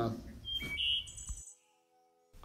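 A few faint, short high-pitched tones, then dead digital silence from about one and a half seconds in.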